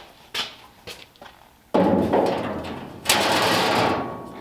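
Sheet-steel floor panel being set into a steel floor frame: a sudden loud metal clatter about two seconds in that fades over about a second, then a harsh scraping rattle in the last second that stops abruptly.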